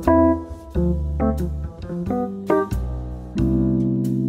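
Jazz play-along backing track with the melody left out: piano comping chords over low bass notes, the last chord held for the final half-second or so.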